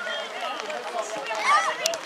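High-pitched children's voices shouting and calling over one another on a football pitch. A brief sharp knock comes near the end.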